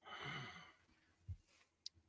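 A person sighing into a close microphone, one short breath of about half a second, followed by a faint low bump and a tiny click.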